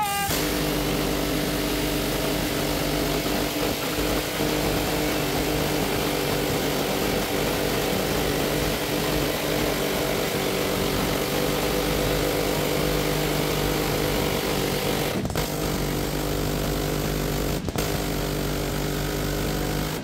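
Sustained automatic fire from the firing line, with vehicle-mounted rotary miniguns running as one continuous buzz at an even level. The buzz drops out for a moment twice near the end.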